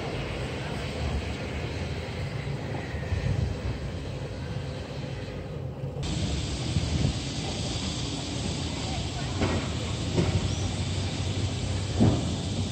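Street ambience: a steady low rumble and hiss of vehicle traffic, with faint voices. The background changes abruptly about six seconds in.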